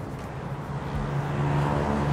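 Road traffic: a motor vehicle's engine hum over the noise of the street, growing steadily louder as it comes closer.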